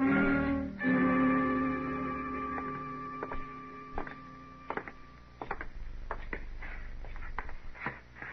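A radio-drama music bridge holds a chord, shifts to a second chord just under a second in, and fades out over the next few seconds. About two and a half seconds in, footsteps begin under it, about one or two a second, and carry on once the music has gone.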